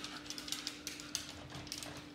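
Faint irregular clicks and handling noise as oil is poured from a plastic vegetable-oil bottle into a glass baking dish, over a steady low hum.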